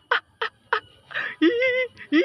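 A person's high-pitched voice: three short 'ih' squeals in the first second, then a drawn-out, wavering squeal like a giggle near the end.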